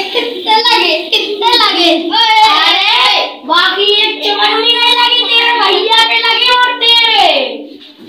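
A young voice singing loudly, with hand claps along with it. The singing ends on a long held note that slides down and stops about seven and a half seconds in.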